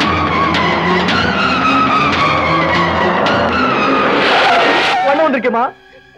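Dramatic film score with held notes and slowly falling lines. About four seconds in, a car's tyres skid under hard braking for about a second. A voice cries out near the end.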